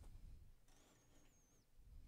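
Near silence: room tone, with a faint, thin, high wavering whine for about a second in the middle.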